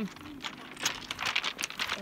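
Beach pebbles clicking and crunching, several short sharp clacks as stones are moved over.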